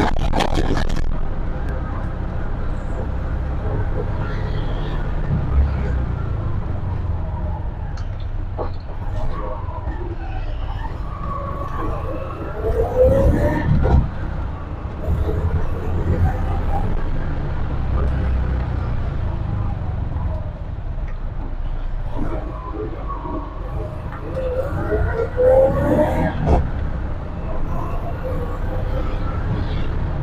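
Engine of a petrol-fuelled TVS King bajaj auto-rickshaw running steadily as it drives, heard from inside its open cabin. It revs up twice, with the pitch climbing, once about midway and again near the end.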